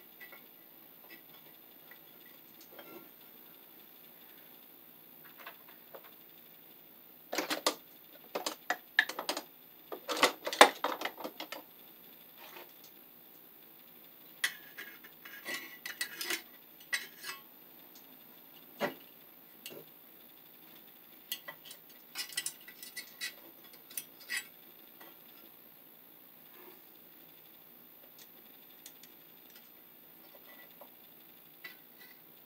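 Metal clicks and clatter of a steel electrical outlet box being handled and fastened to a wooden board with a screwdriver. They come in scattered bursts, busiest about a quarter of the way in, with more around the middle and fewer toward the end.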